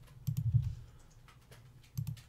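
Typing on a computer keyboard: a quick cluster of keystrokes in the first half second, then a few lighter, scattered ones.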